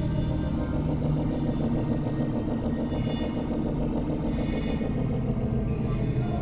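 Experimental synthesizer drone music: dense, sustained low tones with a fast fluttering pulse in the middle register.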